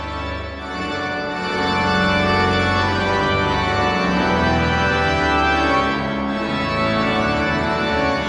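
Hybrid church organ, a Rodgers digital console playing together with winded pipe ranks, sounding full sustained chords with a strong bass. It builds in volume over the first two seconds, then holds loud and steady.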